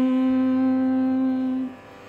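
A voice chanting a Sanskrit mantra holds a single syllable on one steady note, then breaks off near the end.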